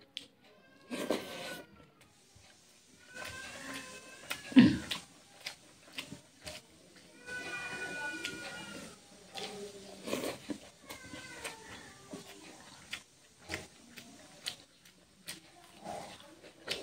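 A cat meowing about four times, with drawn-out, arching calls. Small clicks fall between them.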